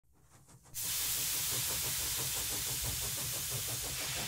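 A steady hiss with a low rumble beneath it, starting abruptly just under a second in.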